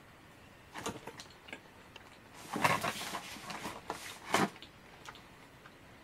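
Quiet mouth sounds of someone chewing a soft mochi cake, with a few faint clicks and a short rustle about two and a half seconds in, then one sharper click a little after four seconds.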